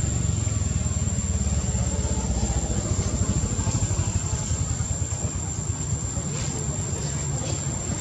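Low rumble of a running engine, easing off somewhat in the second half, with a thin steady high whine above it.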